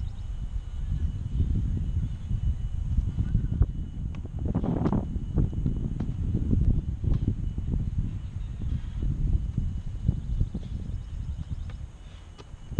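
Wind rumbling on the microphone, with scattered sharp knocks of soccer balls being struck and a goalkeeper diving onto grass, and a louder brief noise about five seconds in.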